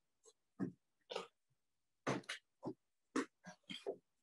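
Cardboard box being handled and closed: a quick series of short scrapes and rustles of cardboard flaps, about nine in four seconds.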